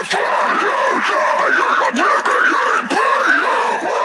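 Isolated harsh deathcore vocals: a continuous screamed vocal line with no breaks.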